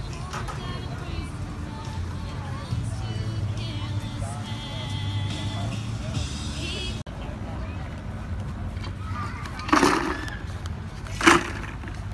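Outdoor crowd chatter with some music in the first half. Near the end come two loud, short scraping crunches, a steel shovel digging into coal.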